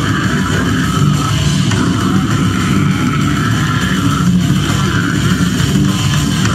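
A brutal death metal band playing live: a loud, dense wall of heavily distorted guitar over fast, relentless drumming, steady throughout.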